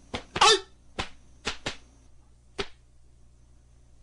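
A taekwondo practitioner's Taegeuk 8 poomsae: a short shout (kihap) about half a second in, the loudest sound, framed by sharp cracks of fast strikes and kicks, five in under three seconds.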